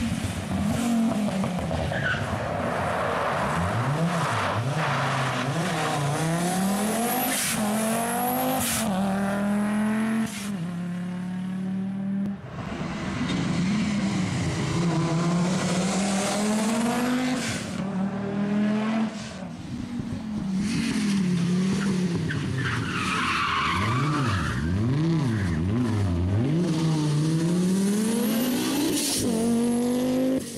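Audi quattro rally car's turbocharged five-cylinder engine revving hard past the camera several times, its pitch climbing and dropping as it goes up and down the gears, with tyre squeal on the tarmac. A few sharp cracks come about a third of the way through.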